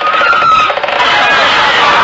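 Studio audience laughing loudly and steadily at a joke, with a brief high tone in the first half second.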